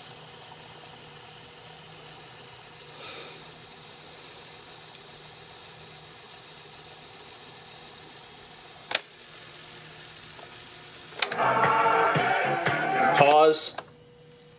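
Cassette deck of a Sony Mega Watchman fast-forwarding a tape, a faint steady whir, then a sharp click of a transport key about nine seconds in. About two seconds later rock-and-roll music plays loudly from the tape for a couple of seconds and cuts off near the end.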